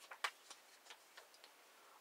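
Near silence with a few faint, irregularly spaced clicks.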